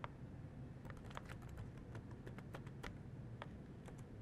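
Faint, irregular clicks of laptop keyboard keys being typed, about a dozen keystrokes as a password is entered.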